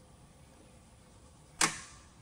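Magneto impulse coupling snapping with one sharp click about one and a half seconds in, followed by a brief ringing, as the propeller is pulled through slowly by hand in its running direction. The click means the magneto has fired: with the ignition live, one or two spark plugs could have fired, the 'hot prop' hazard.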